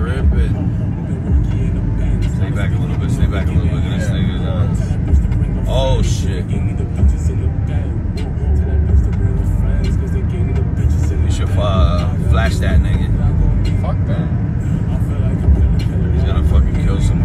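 Steady low rumble of engine and tyre noise inside a moving vehicle's cabin, with a few short sliding voice sounds about a third of the way in and again near the two-thirds mark.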